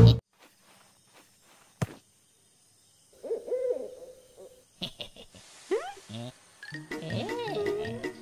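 Cartoon soundtrack: the music cuts off at once, then a single sharp knock about two seconds in. From about three seconds in come wordless, sing-song character vocal sounds, first a wavering hoot-like call and then chattering exclamations near the end.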